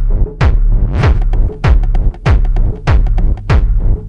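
Techno track with a deep, pulsing bass and a heavy beat coming a little under twice a second, with quick ticks between the beats through the middle.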